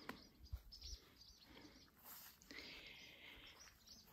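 Near silence with faint, brief bird chirps and a few soft clicks.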